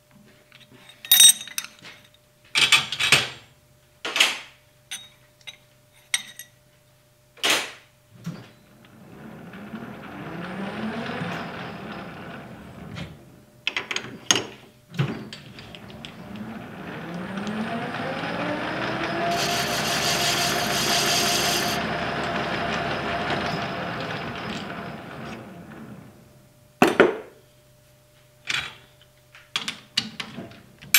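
Metal lathe: a run of sharp metal clicks and clanks, then the chuck spinning up briefly and coasting down, then spinning up again with a whine that climbs in pitch, runs steadily for several seconds and falls away as it winds down. A few more metal knocks follow near the end.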